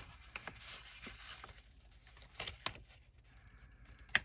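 Faint rustling and scraping of folded cardstock as its flaps are tucked in by hand, with a few soft paper clicks, two of them a little past halfway.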